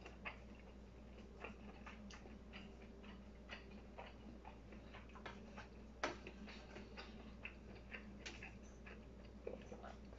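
Faint eating sounds: irregular light clicks of chopsticks against a bowl and chewing, with the sharpest click about six seconds in, over a steady low hum.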